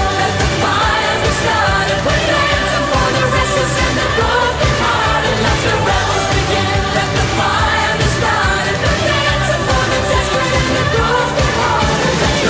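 Big rock anthem with a woman singing lead over a dense full band.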